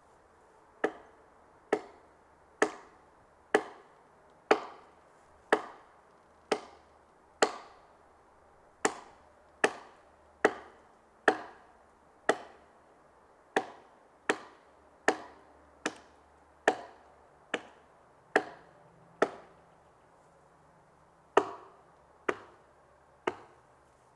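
Wood being chopped with a blade: about two dozen sharp, evenly paced blows, roughly one a second, with a pause of about two seconds near the end before three last strokes.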